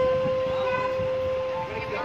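Conch shell (shankha) blown in one long, steady, held note.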